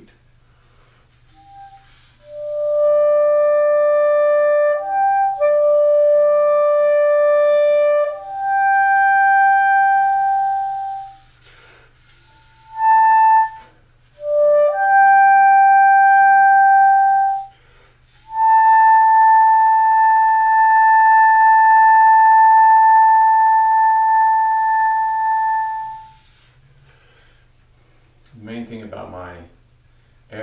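Clarinet playing a slow, soft solo line: several held notes in short phrases with brief pauses between them, ending on a long held high B of about eight seconds that fades away at the end.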